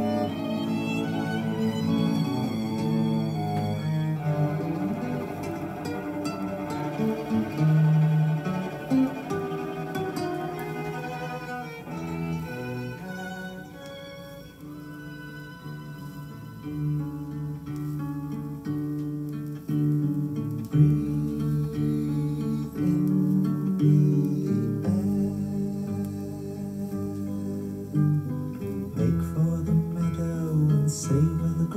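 Instrumental music played from a vinyl record, led by slow, sustained bowed strings in a low cello register, with the notes changing every second or so.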